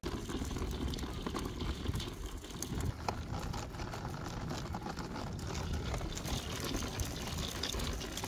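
Stroller wheels rolling over asphalt, a steady rumbling noise with many small crackles of grit under the wheels.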